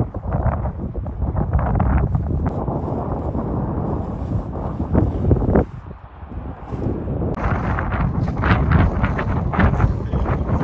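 Wind buffeting the microphone in strong gusts, with a brief lull about six seconds in.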